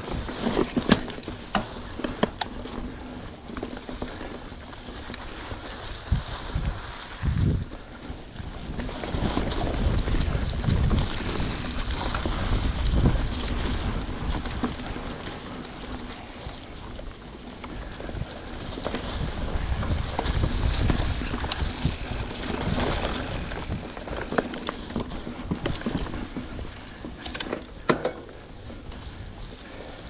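Giant Trance 29 mountain bike rolling over dry fallen leaves and rocks, with frequent knocks and rattles from the bike on the rough ground. Wind rushes over the microphone in two long swells.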